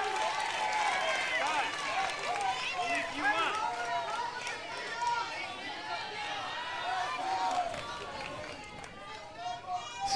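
Baseball crowd in the stands: many overlapping voices talking and calling out, easing off a little near the end.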